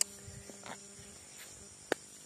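Insects chirring steadily in the grass, with two sharp clicks, one at the start and one near the end.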